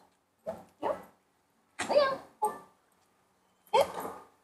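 Black-and-tan shepherd-type dog barking, about five short single barks at uneven gaps.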